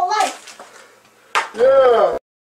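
A person's voice making two wordless exclamations. The second comes near the end, louder and longer, with a pitch that rises and falls, and it cuts off abruptly.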